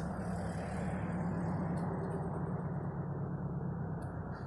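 Steady low engine hum, like a motor vehicle idling, with a brief click about two seconds in.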